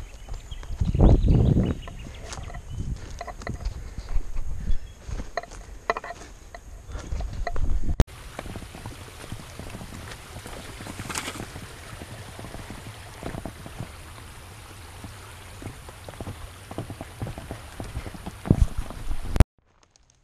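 Hikers' footsteps crunching and scuffing over dry ground, a fallen log and rocks, with a heavy thump about a second in. The sound changes abruptly about eight seconds in and cuts off shortly before the end.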